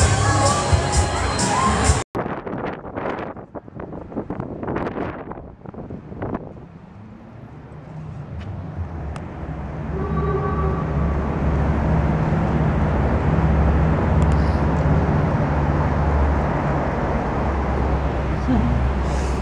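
Fairground music and crowd noise that cut off abruptly about two seconds in. After a quieter stretch, a steady low rumble of city street traffic builds up and holds.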